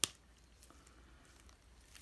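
A single sharp click, then faint handling noises as gloved hands pick up a rotary tattoo pen from the tabletop.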